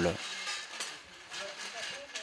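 Faint hiss with light rustling and small metallic clinks as a crowd of people lifts a fabric marquee canopy on its metal frame, with faint distant voices in the second half.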